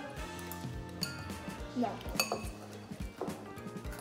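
Metal spoons clinking and scraping against glass cereal bowls, a few sharp clinks, over background music with a steady beat.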